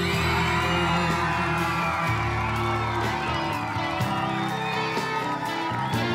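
Live pop-rock band playing a slow ballad, with a high melody line gliding up and down over sustained chords and a steady beat, and the audience cheering and whooping.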